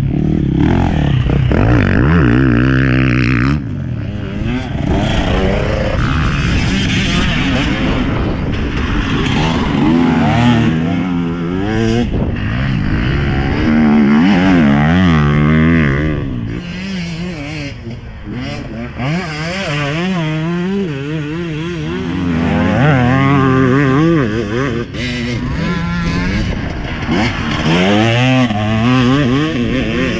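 Enduro motorcycle engine being ridden hard on a dirt track, its pitch repeatedly rising and falling as the rider opens and closes the throttle through the turns.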